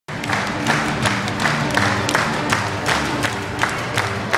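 Live street musicians playing to a crowd: held instrument notes over a sharp, steady beat about three times a second.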